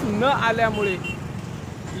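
Steady highway traffic noise from passing trucks and cars. It runs under a man's speech in the first second and is heard on its own after that.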